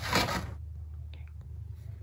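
Pages of a cardboard picture book being turned and handled: a short brushing rustle at the start, then a few faint taps as the book is shifted.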